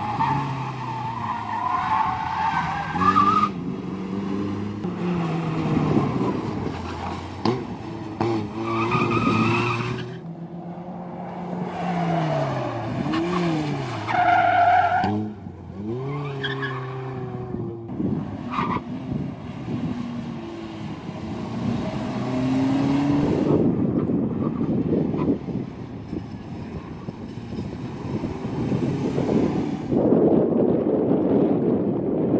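Cars driving a cone slalom at speed: engines revving hard, pitch climbing and dropping through gear changes and lifts, with tyres squealing through the tight turns several times. The sound breaks off abruptly a few times as one run gives way to another.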